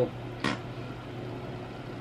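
A pause in the talking, holding a steady low hum of room noise, with one short click about half a second in.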